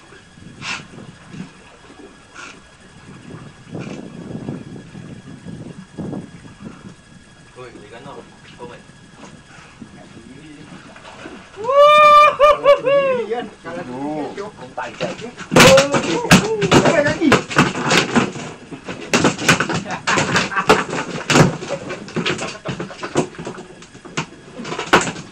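Voices on a small fishing boat: a loud, high, wavering call about halfway through, then a busy stretch of sharp clicks and knocks mixed with talk.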